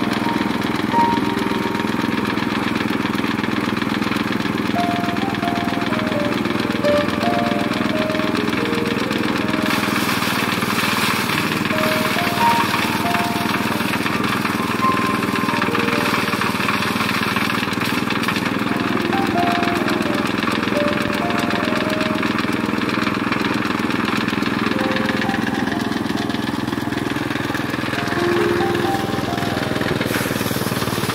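Engine-driven mini rice thresher running steadily, its small engine turning the spiked threshing drum. From about ten seconds in the noise grows brighter and hissier as rice stalks are fed into the drum. Background music plays over it.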